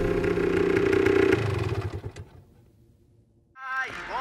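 Motorcycle engine sound effect at the close of a funk track, running steadily and then fading out over about two seconds, followed by about a second of silence. Music with singing starts again near the end.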